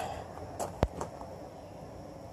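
A single sharp click a little before halfway, with two fainter ticks around it, over a faint steady background.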